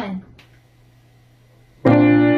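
A short, quiet pause, then a grand piano chord struck suddenly near the end and left ringing.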